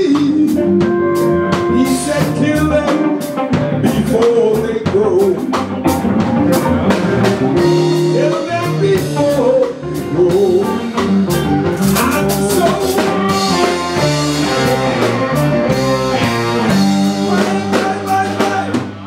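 Live band playing with electric guitars and a drum kit, a blues-style passage with bending lead notes over a steady beat.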